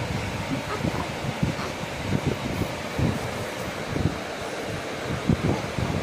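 Steady rushing noise with irregular low rumbling buffets, like air or handling rubbing over a phone's microphone.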